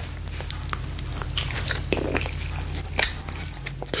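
Close-miked soft clicks and sticky smacks, scattered irregularly, from a giant gelatin gummy candy held at the mouth and handled, over a steady low hum.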